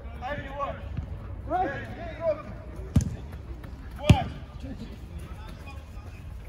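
Two sharp thuds of a football being struck during play on an artificial-turf pitch, about a second apart, the second the louder, with players shouting around them.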